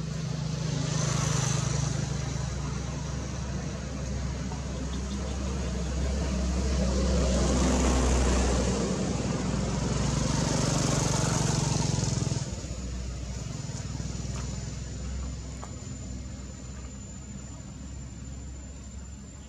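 A motor engine running, swelling louder toward the middle and cutting off sharply about twelve seconds in. A steady high insect trill carries on after it.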